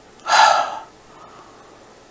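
A man's single loud, breathy gasp, about half a second long, a quarter of a second in.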